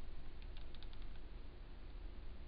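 Hot glue gun trigger being squeezed to feed glue, giving a quick run of small clicks in the first second.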